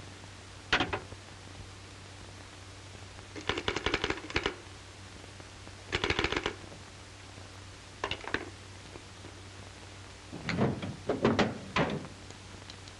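Short bursts of clicking and metallic rattling, five or so clusters a few seconds apart, from a pistol being handled and worked. A steady low hum runs underneath.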